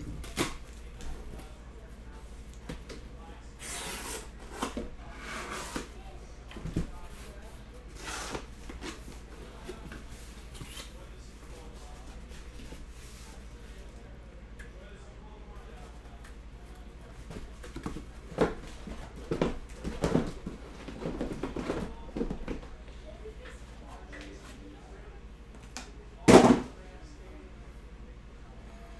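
Cardboard case being opened and sealed boxes of trading cards being unpacked and set down on a table: scattered rustles, scrapes and knocks, a flurry of them about two-thirds of the way in, and one loud thump near the end.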